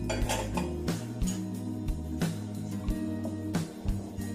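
A spoon stirring thick carrot cream in a stainless steel pot, knocking against the pot several times, over background music with steady held notes.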